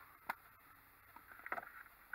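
Freshly caught sunfish flopping on bare ice: two short slaps, one near the start and a quicker cluster about a second and a half in.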